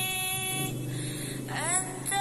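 A musical vehicle horn holding a steady note that breaks off under a second in, followed near the end by a short rising slide in pitch.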